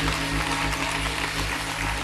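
Church keyboard holding a sustained chord under a steady wash of congregation noise.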